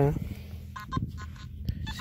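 Nokta Makro Simplex+ metal detector giving a quick run of short beeps at changing pitches as its coil sweeps over a buried target, starting about three-quarters of a second in. It is a jumpy signal, with readings all over the place, that could be just a piece of wire.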